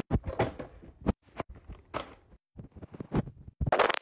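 Plastic grocery packaging being handled: irregular crinkles, taps and knocks from plastic bags and a clear plastic container, broken by abrupt gaps, with a louder crinkling burst near the end.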